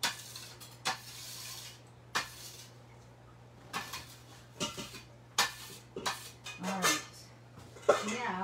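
Metal bench scraper scraping across a granite countertop for the first couple of seconds, then scattered clinks and knocks of a metal mixing bowl and kitchen utensils being handled and set down.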